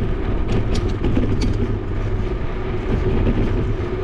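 Steady rumble of a bicycle rolling over asphalt, with wind on a helmet- or bike-mounted action camera's microphone and a few light rattling clicks in the first second and a half.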